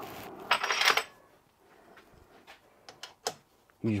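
Light handling noise of metal workshop parts: a brief rustle in the first second, then a few faint metallic clicks near the end as the coupling and its bolts are handled.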